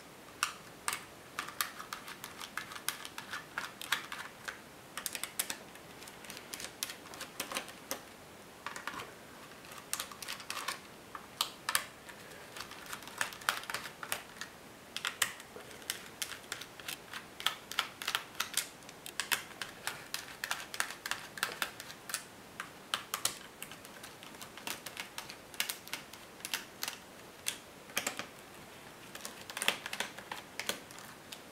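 Small screwdriver backing the screws out of a netbook's plastic bottom cover: irregular runs of small clicks and ticks as the bit works in the screw heads, with short pauses between screws.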